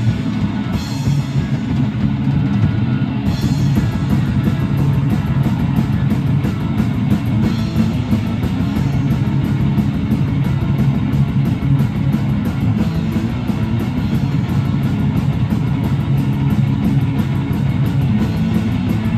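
Live rock band playing loud and fast: distorted electric guitars, electric bass and a drum kit with rapid, continuous cymbal hits, heard from the audience in a small club.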